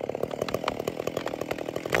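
Cottonwood's hinge wood cracking and popping in a rapid, irregular run of sharp snaps as the cut-through tree starts to tip over.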